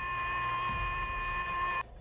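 Cockpit voice recording playing a steady high electronic tone over a low cabin rumble, with no voices; it cuts off abruptly near the end.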